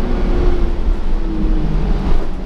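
Cabin noise inside a 2015 Gillig Advantage transit bus under way: a steady low rumble of engine and road, with a faint drivetrain whine that drops in pitch about a second and a half in.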